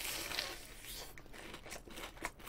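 Biting into a sauce-dipped breaded cheese pork cutlet (donkatsu), a faint crunching of the fried crust for about a second, then quieter chewing with small clicks; its cheese filling has gone firm as it cooled.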